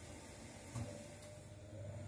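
Quiet room tone with a low steady hum and one faint short sound a little under a second in.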